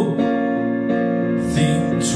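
Accompaniment of a soft-rock ballad between sung lines: sustained keyboard chords with piano, steady and held.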